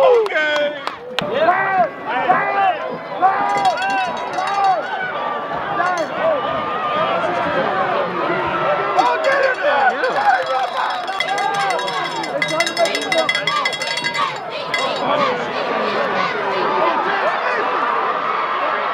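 Spectators at a football game: many voices talking and shouting over one another from the stands, with light metallic jingling now and then.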